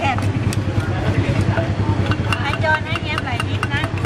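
Street-stall voices talking over a steady low engine hum, with scattered light clicks and taps.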